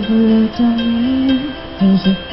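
A woman singing into a microphone over instrumental accompaniment, holding long notes that slide up and down in pitch.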